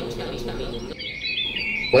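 Birds chirping: a short run of high, twittering calls starting about a second in, over a faint low background tone.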